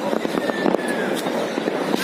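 Many fireworks and firecrackers going off at once in a dense, steady crackle of small bangs, with a few faint whistles gliding in pitch.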